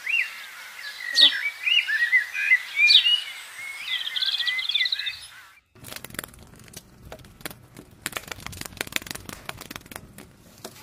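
Birds chirping and trilling. About six seconds in the sound changes abruptly to grapevine leaves and stems rustling and crackling, with sharp clicks of pruning shears as the vine is cut back.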